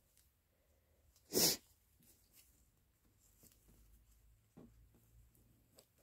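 A single short, sharp burst of breath noise from a person about one and a half seconds in. Faint rustling and light ticks follow as a checked fabric tie is wrapped and crossed around a small paper card.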